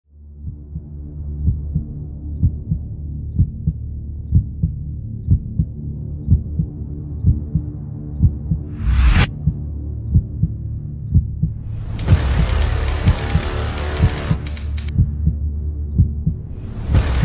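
Cinematic trailer soundtrack: a low drone with a slow, heartbeat-like pulse, a rising whoosh about nine seconds in, then a louder, hissing full-range layer from about twelve seconds that falls away near fifteen seconds.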